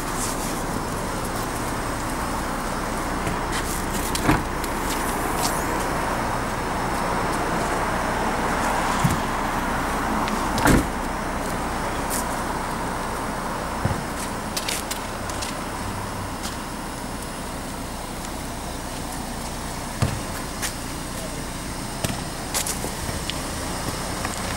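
Steady outdoor background noise, likely distant traffic, with a few short knocks and clicks scattered through it, the loudest about halfway through.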